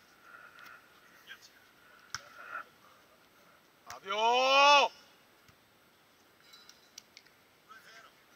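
A player's loud, drawn-out shout, rising in pitch and lasting about a second, about four seconds in. A few sharp slaps of hands hitting a beach volleyball come before it.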